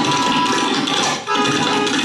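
Tabla played in a fast, dense stream of strokes over a harmonium holding a steady, repeating melody line (the lehra accompaniment of a tabla solo). There is a brief break in the strokes just over a second in.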